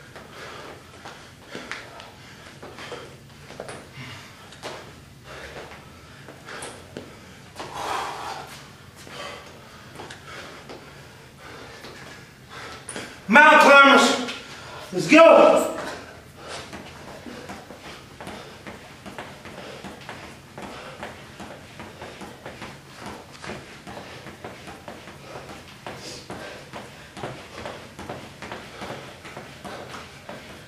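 A steady run of light thuds and slaps from hands and feet landing on the floor and exercise mat during squat thrusts. About halfway through, a man's voice calls out loudly twice.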